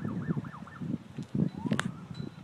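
Gusty wind buffeting a phone's microphone in irregular bursts, with a short, quick up-and-down warbling siren-like tone near the start and a rising tone later.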